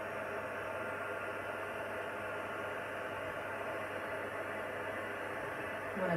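Handheld craft heat tool running steadily, blowing hot air to dry water-based shimmer paint on vellum.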